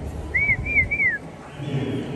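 A person whistling three short notes in quick succession, each sliding up and then back down.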